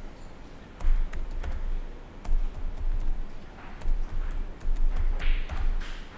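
Typing on a laptop keyboard: irregular key clicks over low thuds.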